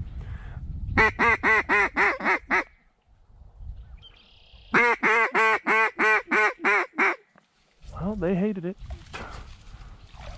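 Mallard duck call blown by a hunter: two loud strings of quacks, about seven and then ten evenly spaced notes at roughly four a second, followed near the end by a shorter, lower run of notes.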